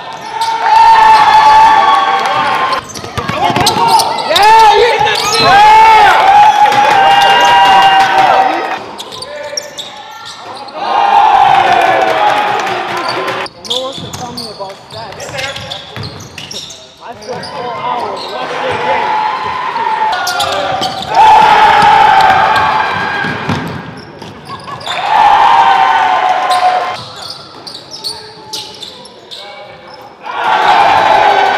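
Basketball game play in a gym: the ball bouncing on the hardwood floor, with loud, drawn-out voice-like calls every few seconds and no clear words.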